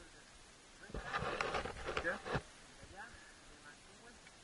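A person's voice, a brief indistinct burst of speech or shouting about a second in, lasting about a second and a half.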